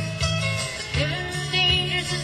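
A country band playing live, with a sung vocal line over guitar and a pulsing bass line; the voice glides upward about halfway through.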